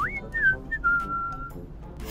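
A person whistling a short tune: a quick upward glide, two short falling notes, then one longer held note that stops about a second and a half in.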